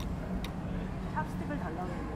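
Eatery background: a steady low hum with faint voices in the background, and a light clink of metal cutlery against a ceramic bowl about half a second in.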